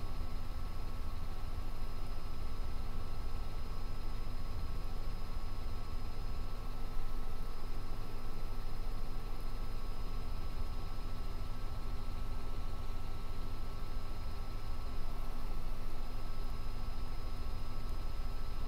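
Cabin noise of a Robinson R66 helicopter in cruise flight: a steady low rumble from the rotor and its Rolls-Royce RR300 turbine, with a few steady whining tones over it.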